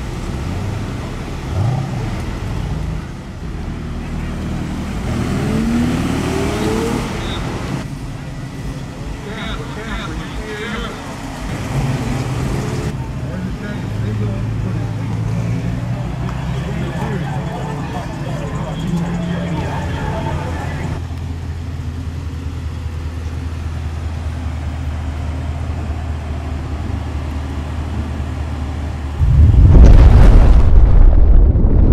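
Car engines running at low speed as cars move through a parking lot, a steady low hum with voices in the background. Just before the end, a loud explosion sound effect cuts in.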